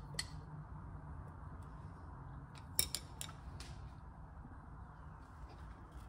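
Wooden utensil scraping thick sourdough starter out of a glass bowl into a glass jar: faint scraping with a few light clicks against the glass, several close together about three seconds in, over a low steady hum.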